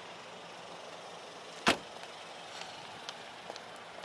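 Steady outdoor hiss with one sharp, loud click or knock about halfway through, followed by a few faint light ticks.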